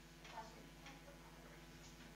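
Near silence: a few faint ticks of a marker writing on a whiteboard, the clearest about half a second in, over a faint low hum.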